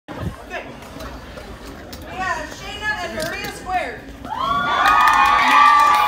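An audience of young people cheering and shouting. Scattered whoops come first, then many voices join in a loud, sustained high-pitched cheer from a little past the middle to the end.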